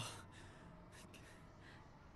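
Near silence: faint room tone with a few soft breathy sounds.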